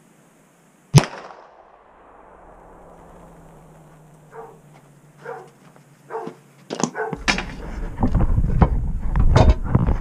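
A single handgun shot about a second in, the loudest sound, ringing out with a fading echo. A few seconds later, footsteps come close and the camera is handled, sending loud rumbling and rustling into the microphone near the end.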